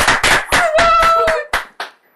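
A small audience applauding, a rapid patter of hand claps that thins out and stops shortly before the end.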